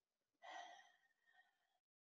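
Near silence, with one faint breath or sigh from a woman about half a second in.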